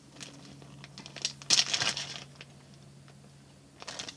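Plastic bag of wax melts crinkling as it is handled, with a louder burst of rustling about a second and a half in.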